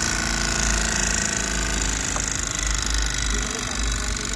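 Steady machine hum with a high hiss, running evenly with no clear start or stop.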